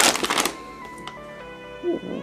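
Plastic squishy packaging crinkling and rustling as it is pulled open, for about half a second, then quiet background music with held notes stepping from pitch to pitch.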